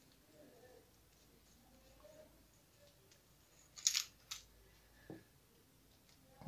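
Small metal parts of a baitcasting fishing reel clicking as its drag parts and washers are worked loose by hand: a sharp double click about four seconds in, a lighter click just after, and a soft knock near the end.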